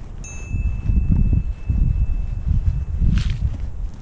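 Wind buffeting the camera microphone in wingsuit flight, a rough low rumble, with a bell-like chime struck just after the start that rings for about three seconds. A brief high hiss comes near the end.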